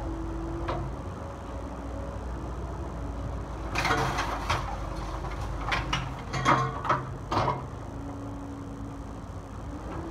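Cat 308E2 mini excavator's diesel engine and hydraulics running steadily while its bucket and thumb crunch through broken wooden debris. There is a cluster of sharp cracks and knocks about four seconds in, and another from about six to seven and a half seconds.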